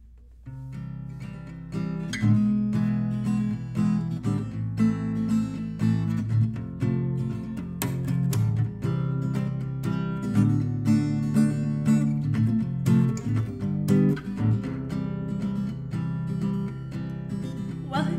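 Solo acoustic guitar strumming chords in a steady rhythm as a song's intro. It comes in softly about half a second in and is played fuller and louder from about two seconds in.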